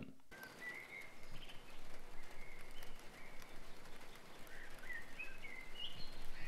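A small bird chirping: short, high chirps every second or so over faint outdoor background hiss.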